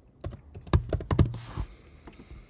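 Typing on a computer keyboard: a quick, uneven run of keystroke clicks as a word is typed.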